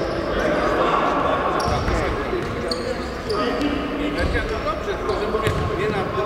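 Indistinct voices echoing in a large sports hall, with a few dull thuds of a futsal ball bouncing or being kicked on the wooden gym floor.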